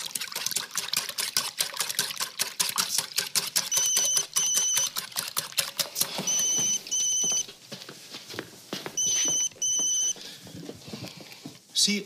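A whisk clicks and scrapes rapidly in a small metal saucepan as breakfast is beaten, fading out about halfway through. A mobile phone rings three times, each ring a pair of short electronic beeps, roughly every two and a half seconds.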